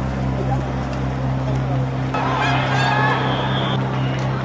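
Outdoor protest-crowd ambience over a steady low hum, with a loud, harsh shouted voice breaking in suddenly about halfway through and stopping shortly before the end.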